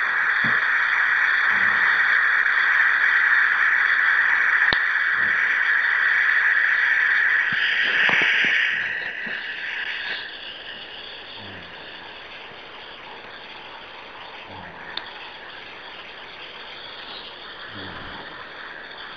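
Steady hissing noise on a conference-call line, loud for the first eight seconds or so, then dropping to a quieter background hiss about ten seconds in, with a few faint clicks.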